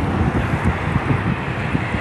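Wind buffeting a phone's microphone in uneven gusts, over the steady sound of road traffic on a seaside avenue.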